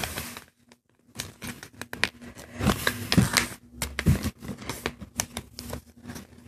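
A sheet of paper being folded and creased by hand: irregular rustling and crisp crackles as it is pressed flat. There is a short pause near the start.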